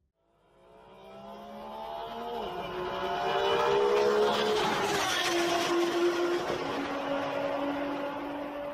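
Car engine rising out of silence, its pitch climbing as it gets louder. About halfway it drops to a lower, steadier note and then fades away.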